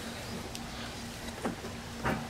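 Faint clicks from the self-propelled mower's drive transmission being handled, twice, over a steady low hum.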